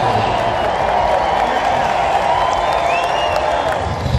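Large stadium crowd cheering and applauding, a steady roar with a few whoops and whistles rising and falling above it.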